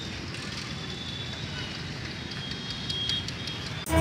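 Roadside street-market ambience: a steady hum of outdoor noise with indistinct distant voices. Near the end it is cut off suddenly by loud theme music.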